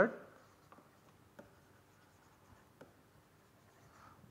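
Faint taps and light scratching of a stylus writing on a tablet, a handful of soft ticks spread over a few seconds.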